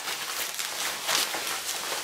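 Rustling of an Army DPM Gore-Tex shell jacket as it is handled and turned over, in a few soft swells of fabric noise.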